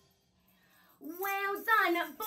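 Near silence for about a second, then a high singing voice begins, gliding up and down in pitch.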